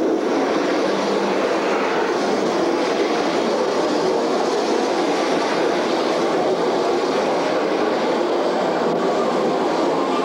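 Steady rushing, rumbling noise of a flume-ride boat moving through its water channel in the dark. It starts suddenly and holds at an even level.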